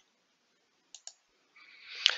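A few faint clicks of computer keyboard keys being typed, two of them close together about a second in.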